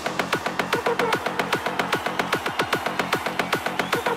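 Hardstyle dance-music intro: a fast, steady electronic beat of rapid, evenly spaced percussive hits.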